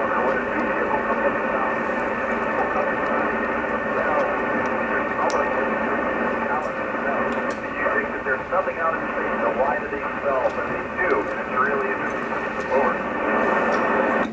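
An astronaut aboard the International Space Station talking over an amateur radio downlink: narrow, hissy radio audio with the voice partly buried in static. It gives way to clear room speech near the end.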